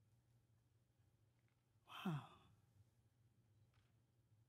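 Near silence with a faint low room hum, broken about two seconds in by a single short, breathy "wow" from a person's voice, falling in pitch like a sigh.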